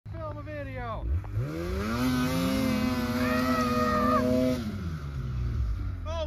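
Two-stroke snowmobile engine revving while the sled sits stuck in deep snow. It drops off at first, climbs about a second in to a high held rev for a few seconds, then falls away near the end as the track digs the sled in deeper.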